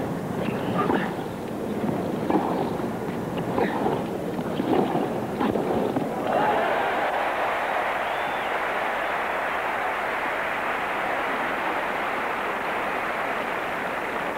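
Tennis rally: a few sharp ball strikes off the rackets over a low crowd hum. About six seconds in, the stadium crowd breaks into steady applause that carries on.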